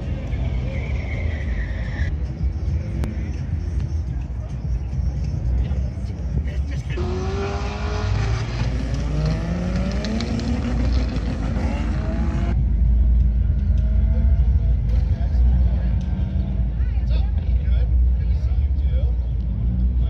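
Car engines running with a low rumble and voices in the background; for a few seconds in the middle an engine's pitch rises and falls as it revs or moves off. The sound changes abruptly at edits between cut-together stretches.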